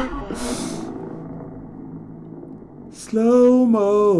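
Racing motorcycle engine at high revs, suddenly loud about three seconds in as the bike nears, its pitch holding and then stepping. Before that, only a faint fading hum.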